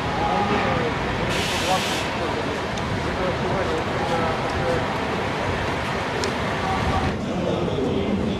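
Outdoor street ambience: indistinct voices of people talking over a steady rush of background noise. A short, sharp hiss comes about a second and a half in.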